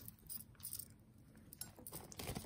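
Faint light clinks and jingles of small metal costume jewelry being picked through by hand, with a plastic bag rustling.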